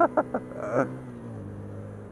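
A 125 cc motorcycle engine running steadily while riding, heard with road and wind noise; its note dips slightly about a second and a half in.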